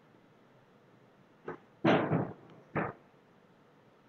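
Three short handling knocks from a motorcycle's front brake master cylinder as it is loosened and turned on the handlebar: a faint one about a second and a half in, the loudest just after two seconds, and a last one near three seconds.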